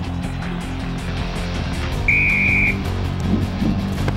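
Background music with low held notes; about two seconds in, a single short blast of a referee's whistle.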